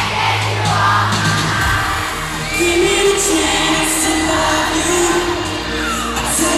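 Live pop song over an amplified backing track, with held sung notes and a crowd of fans screaming over it.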